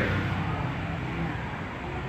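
A steady low hum and background room noise, with faint indistinct voices.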